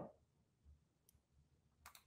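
Near silence, broken by two faint short clicks, one about a second in and one near the end.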